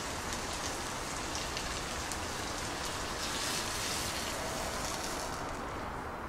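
A cup of water poured into a hot clay pot of toasted rice, giving a steady hissing rush. The high part of the hiss falls away near the end.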